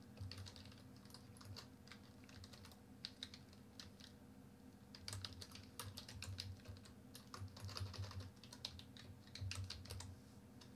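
Faint computer keyboard typing: scattered keystrokes at first, then quicker runs of key presses in the second half as a terminal command is typed.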